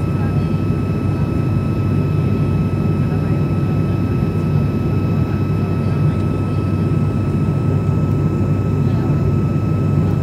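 Cabin sound of a turboprop airliner in flight: a loud, steady low drone from the engines and propellers, with a steady high whine above it.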